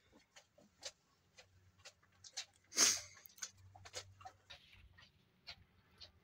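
Calf suckling milk from a goat's udder: short wet sucking smacks, about two a second, with one louder, longer noisy burst just before the middle.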